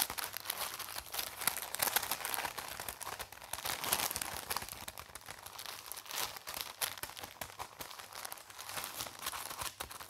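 Crinkly wrapping on a soft, floral-printed package being squeezed and rubbed between the fingers, a continuous dense crackling close to the microphone.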